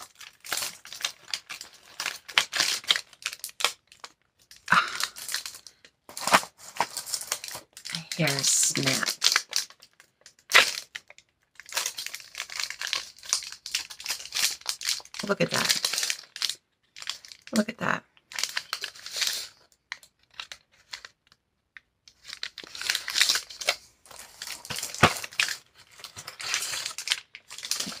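Plastic packaging crinkling and tearing in irregular handfuls as it is handled and opened, with a few short low murmurs of a woman's voice in between.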